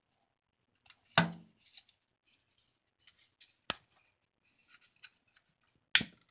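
A long-nosed butane lighter's igniter being clicked: three sharp clicks, about a second in, near four seconds and at the end, with fainter small ticks between.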